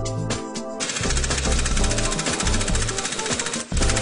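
Pneumatic impact wrench hammering as it runs the threaded spindle of a Klann suspension tool: a loud, fast rattle that starts about a second in and stops shortly before the end, over background music.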